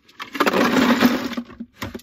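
Ice cubes poured from a glass jar into a small plastic Coleman cooler: about a second of dense clattering, then a couple of last clinks.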